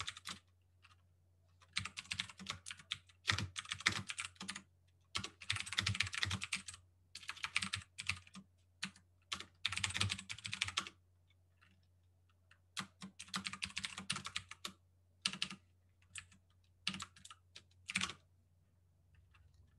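Typing on a computer keyboard: quick runs of keystrokes separated by short pauses, then a break of about two seconds followed by a few scattered keystrokes, over a faint steady low hum.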